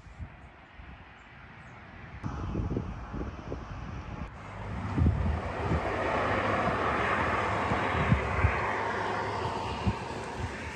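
Iveco Daily camper van driving along a road: a steady rush of engine and tyre noise that builds from quiet over the first few seconds, is loudest in the second half, and eases slightly near the end, over irregular low thumps.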